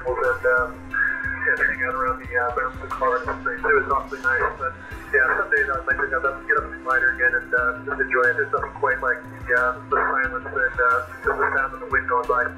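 A man's voice received over 10-meter single-sideband ham radio through the transceiver's speaker: narrow, band-limited radio speech with a steady tone under it.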